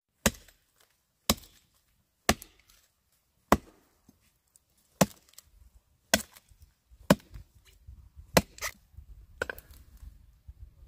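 A hand blade chopping into a small wooden tree trunk, sharp separate strikes roughly once a second, two in quick succession near the end.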